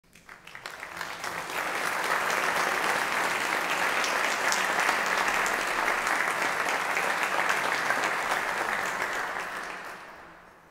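Audience applause, swelling over the first two seconds, holding steady, then dying away near the end.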